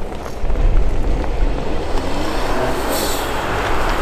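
Mitsubishi Lancer Evolution X's turbocharged four-cylinder engine running as the car rolls slowly toward its stopping mark, with a low rumble and a brief hiss about three seconds in.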